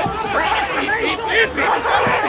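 Voices chattering and exclaiming in quick, overlapping bursts with no clear words.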